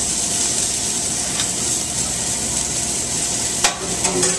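Risotto sizzling in a sauté pan over a gas flame as it is stirred, a steady hiss. A single sharp click near the end.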